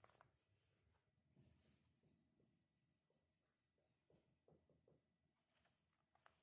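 Near silence, with the faint, irregular scratching of writing on a lecture-hall board.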